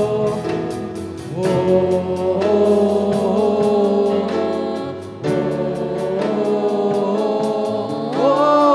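Live church worship band with drums, electric guitar, bass and keyboard playing a gospel praise song to a steady drum beat, while voices sing together, holding long notes on an "oh, oh, oh" refrain.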